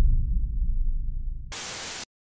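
Logo sound effects: the deep low rumble of a boom fading away, then, near the end, about half a second of static hiss that cuts off suddenly.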